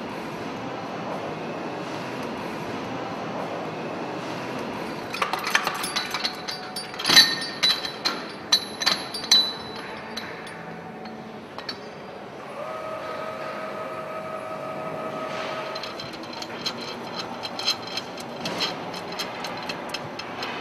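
Steel parts of a hydraulic cylinder-head stud-tensioning device clinking and knocking against each other and the head as it is taken off the studs, in two bouts of sharp ringing clinks. A steady hum sounds for a few seconds between them.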